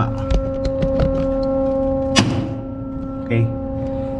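A plastic emergency-stop safety relay being pressed onto its DIN rail: a few small clicks, then one sharp snap about two seconds in as it clips into place, over a steady electrical hum.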